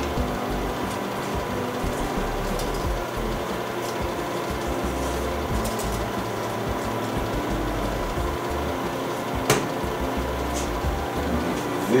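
Steady background hum of room machinery, with one sharp knock about nine and a half seconds in as the film developing tank is set down on the stainless-steel counter.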